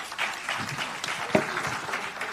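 Audience applauding, with one sharper knock just past halfway.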